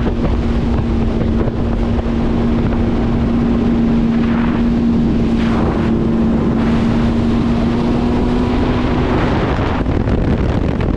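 2022 Yamaha VX Cruiser HO WaveRunner under way at steady speed, its engine and jet drive making a steady drone with one held tone. Wind buffets the microphone and spray hisses off the hull, with a brief swell of hiss in the middle.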